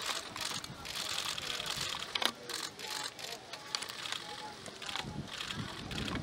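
Camera shutters clicking irregularly, many in quick runs with one sharper click about two seconds in, over faint murmured voices.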